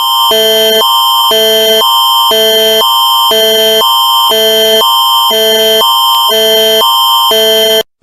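Canadian Alert Ready attention signal: a loud electronic alert tone, a steady high tone over lower tones that alternate about twice a second. It lasts about eight seconds and cuts off suddenly just before the alert message resumes.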